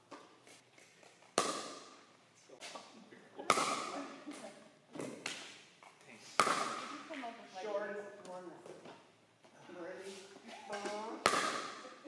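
Pickleball paddle striking a hollow plastic pickleball on serves: four sharp hits, the first three a few seconds apart and the last after a longer gap, each ringing briefly.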